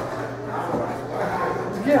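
Indistinct voices talking quietly over a steady low hum, with a louder man's "yeah" right at the end.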